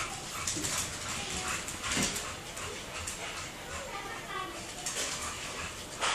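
Pug making short, thin whining sounds while scrambling after a laser dot, with scattered light clicks of its claws on a hardwood floor.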